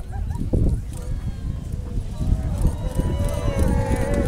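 Crowd of spectators exclaiming, with several drawn-out overlapping 'ooh'-like voices rising from about halfway through, over a steady, fluctuating low rumble.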